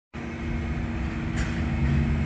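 Steady low rumble with a constant droning hum from an engine or machine.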